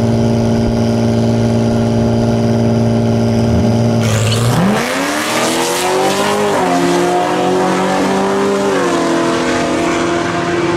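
Acura NSX and C7 Corvette Grand Sport drag racing: an engine is held at steady revs on the start line, then both cars launch about four seconds in with a rush of engine and tyre noise. The engine pitch climbs and drops twice at gear changes as the cars pull away down the strip.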